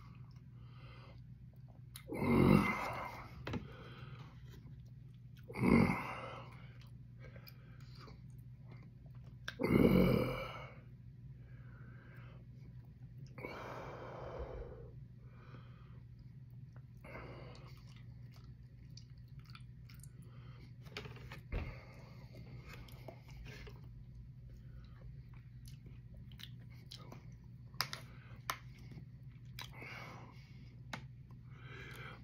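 A man's breath and mouth sounds while he endures a chocolate primotalii pepper's burn: three loud huffs about two, six and ten seconds in, a softer one a few seconds later, then faint lip smacks and clicks over a steady low hum.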